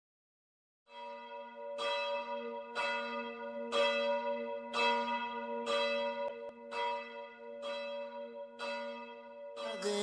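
A church bell tolling, struck about once a second, nine times. Each stroke rings on under the next over a steady low hum. Near the end, a sung hymn with music comes in over it.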